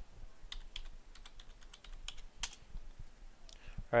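Computer keyboard keystrokes, irregular taps as a login is typed in, with one louder click about two and a half seconds in.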